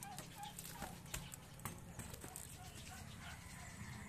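Faint rustling and clicking of clear plastic bags as bagged bread rolls are handled in a plastic crate, with faint short animal calls in the background.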